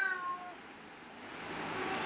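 A domestic cat meowing: one call that falls in pitch and ends about half a second in. A faint hiss builds up near the end.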